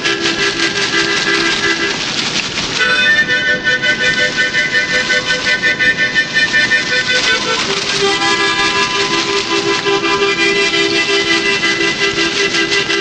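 Harmonica playing held chords with a quick, pulsing breath rhythm, moving to a new chord about three seconds in and back again near eight seconds.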